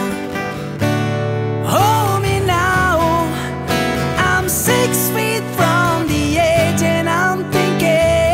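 Acoustic cover of a rock ballad: strummed acoustic guitar with a male voice singing over it, the sung lines starting a little under two seconds in.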